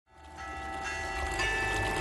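Church bells ringing, fading in and swelling louder, with tones entering one after another and ringing on.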